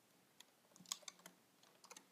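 Faint computer keyboard typing: a scattering of soft key clicks that starts about half a second in, as code is typed into the editor.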